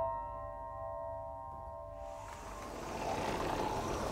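The last notes of a piano transition cue ring on and die away. About halfway in, a steady noisy background hum rises in their place, the ambience of the next scene.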